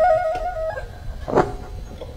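Khmer traditional (pleng boran) ensemble music: a melody line that steps from note to note and stops under a second in, leaving a short quiet lull.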